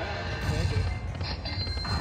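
Electronic tones and chimes of a Panda Magic video slot machine as its reels spin, over the steady background din of a casino floor.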